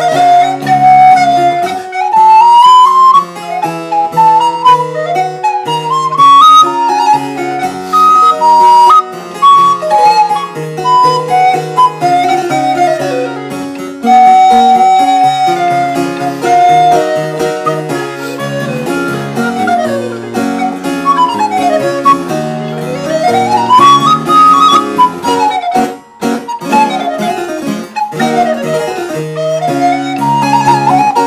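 Wooden recorder playing a fast Baroque melody of quick rising and falling scale runs and a few held notes, accompanied by harpsichord chords.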